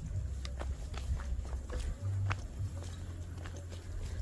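Footsteps on a dirt path: irregular light crunches and scuffs, over a low steady rumble.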